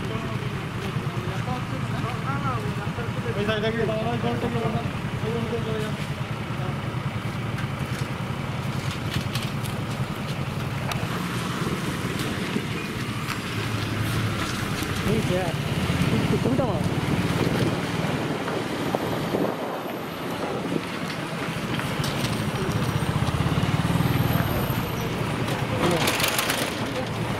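Busy street sound: people's voices, clearest in the first few seconds, over a vehicle engine running.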